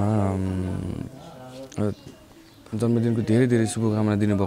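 A man's voice singing unaccompanied, holding long, wavering notes, with a short quieter pause in the middle before the singing resumes.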